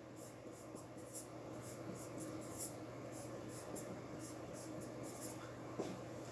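Marker pen writing on a whiteboard in many short, faint strokes, over a steady low room hum.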